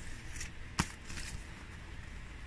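Quiet handling of a deck of cards in the hands, with one sharp click a little under a second in and a few fainter ticks.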